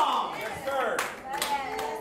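About four sharp hand claps at uneven spacing, mixed with a man's drawn-out exclamation falling in pitch at the start and short vocal sounds between the claps.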